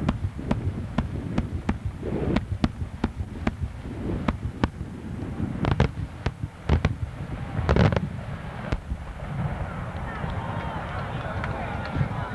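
Daytime aerial fireworks going off: a rapid, uneven run of sharp bangs, about two or three a second, with a few louder reports near the middle. In the last couple of seconds the bangs give way to a dense, wavering mix of higher sounds.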